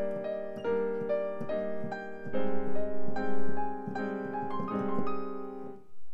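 Piano sound from a digital keyboard: a chord held under the right hand, which plays the same chord broken up into small patterns of single notes. The harmony changes a little over two seconds in, and the playing stops just before the end.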